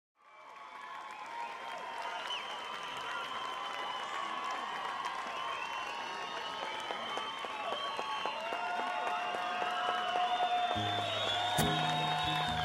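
A concert crowd cheering and applauding, with many high gliding whistles and shouts. About eleven seconds in, plucked guitar notes start underneath.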